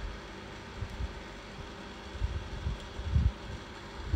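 Steady background hiss with several dull low thumps scattered through it.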